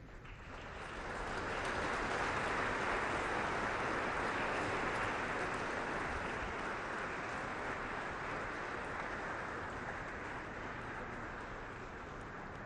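Audience applauding, building up over the first two seconds and then holding and slowly fading.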